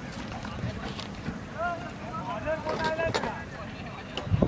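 Wind rumbling on the microphone, with distant voices of players and onlookers calling out, loudest between about one and a half and three seconds in.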